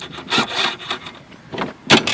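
Rubbing and scraping noises from a small black plastic part being handled, in a few short bursts.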